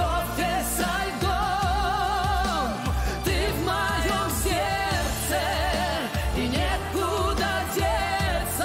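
A male voice singing a pop ballad duet live with orchestral accompaniment, holding several long notes with wide vibrato over a steady bass line.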